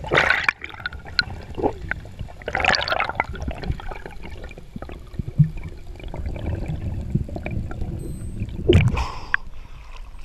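Underwater water noise heard through a diving camera during a free-dive ascent: a steady low rumble of moving water, with gurgling, swishing bursts at the start, around three seconds in and again just before the surface is broken.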